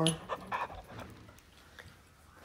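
A dog panting in short, quick breaths during the first second, then quieter.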